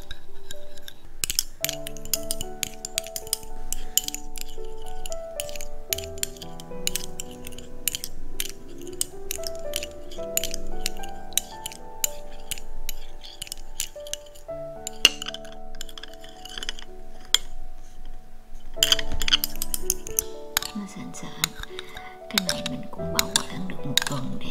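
A metal spoon clinking quickly and irregularly against a small ceramic bowl as a thick, creamy mixture is stirred, over soft background music of held notes.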